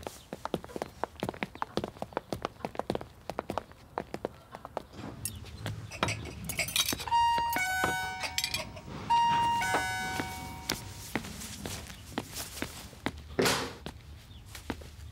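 Electronic apartment doorbell playing a short run of chime tones twice, about two seconds apart. Before it, a stretch of light clicks and knocks.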